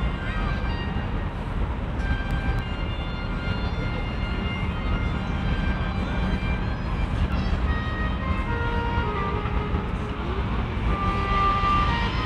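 Outdoor city ambience: a steady low rumble, with short faint voices and calls scattered through it.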